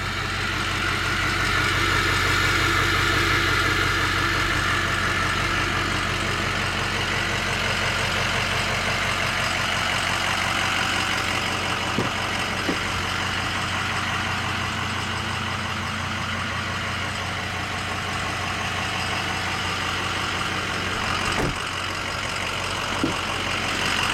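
Ford 6.0-litre Power Stroke V8 turbodiesel idling steadily. A few short clicks about halfway through and near the end as the rear door handle is worked and the door opened.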